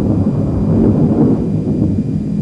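A loud, continuous low rumbling noise.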